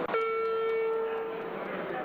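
A single steady electronic tone sounds for about a second and a half, starting suddenly and fading out, as the electronic voting timer reaches zero: the signal that voting in the division has closed. Members' chatter in the chamber continues underneath.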